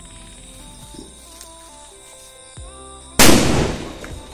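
A single firecracker going off about three seconds in: one sudden loud bang with a short fading tail.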